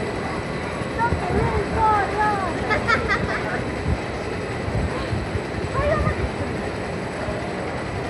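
Steady low rumble of a steel roller coaster train running along its track, with people's voices calling out over it, several in the first few seconds and again later on.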